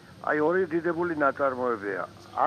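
Speech only: a voice talking.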